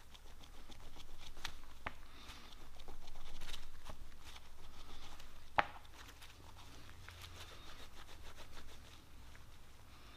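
Shop towel rubbing and rustling as a small aluminum part is hand-polished in it, the rubbing swelling and easing in strokes. There is one sharp tap about halfway through.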